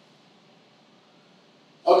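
Near silence: faint room tone in a pause, with a man's voice starting again just before the end.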